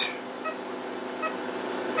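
Steady machine hum with a few faint, short, high blips over it.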